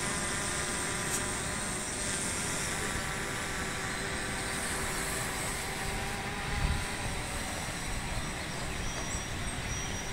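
Quadcopter drone propellers (FIMI X8 SE V2) giving a steady pitched buzz that fades after about four seconds as the drone draws away. A dull bump is heard near seven seconds.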